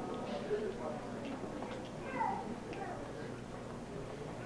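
Indistinct chatter of many children's voices in an audience, with a few short higher-pitched calls, one standing out about two seconds in.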